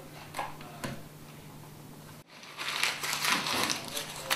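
Sheet of paper being crumpled into a ball by hand, a dense irregular crackling that starts a little past halfway. Before it there are only a few faint clicks over a low room hum.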